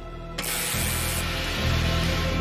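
A sudden jet of gas hissing out about half a second in. It is sharpest for the first moment, then carries on as a steady hiss over a sustained, tense music score.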